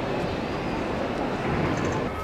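Steady outdoor background noise: an even rushing hiss with an irregular low rumble underneath.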